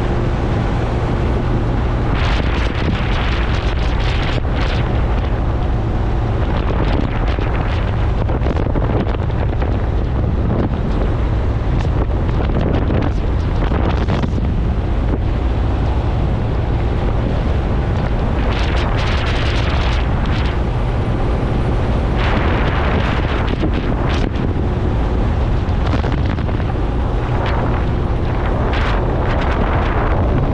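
Motorcycle engine running at a steady cruise, with heavy wind buffeting on the microphone that swells in gusts.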